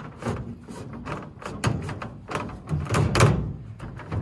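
Handling noise from a nylon cord tie-down over a fiberglass stepladder in a pickup bed: a series of knocks and scrapes as the rope is pulled taut and the ladder is pressed down, loudest in a cluster about three seconds in.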